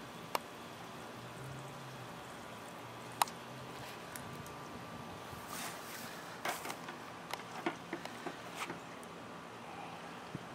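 Faint handling noises as a garden hose is moved and a balloon is fitted onto its end: a couple of single sharp clicks in the first few seconds, then a cluster of small clicks and rustles through the second half, over a steady low background.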